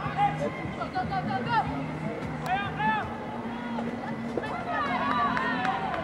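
Several high-pitched women's voices shouting and calling in short rising-and-falling cries, thicker in two flurries, over a low steady tone.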